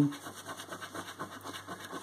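A coin scratching the scratch-off coating of a scratchcard in quick, rhythmic back-and-forth strokes, several a second.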